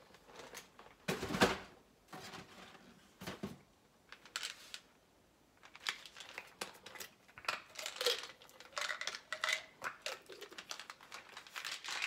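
Household packaging being handled: a cardboard cereal box moved about with a loud crinkly rustle about a second in, then a plastic supplement bottle's cap twisted open and a gummy shaken out, a run of short scratchy clicks and rattles.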